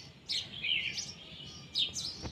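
Small birds chirping: a few short, high chirps scattered through two seconds.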